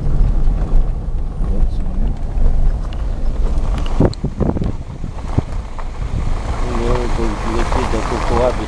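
Handheld camera microphone buffeted by wind and handling, a steady low rumble with a few sharp knocks about four seconds in. A voice speaks briefly near the end.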